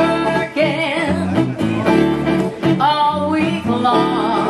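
Live acoustic band playing country-style music, with plucked guitar and a wavering melody line over a steady low pulse.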